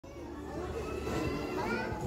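Background chatter of voices, children's among them, in a busy room, with no words clear enough to make out.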